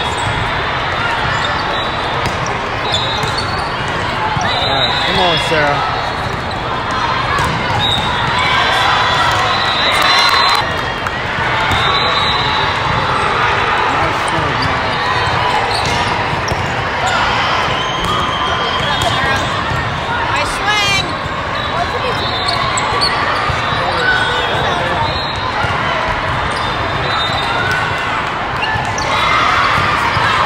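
Volleyballs being hit and bouncing, sharp thuds repeated throughout, over a steady din of many overlapping voices echoing in a large hall.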